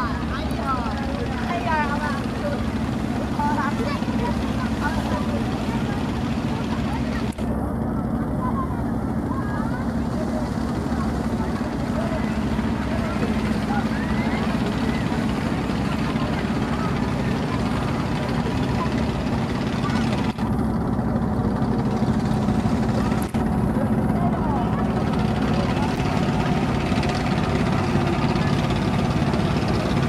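A cargo trawler's inboard engine running steadily under way, a low, even drone with a rushing splash of water from the bow wave.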